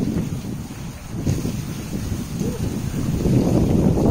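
Wind buffeting the microphone: a low, uneven noise that eases about a second in and builds again toward the end.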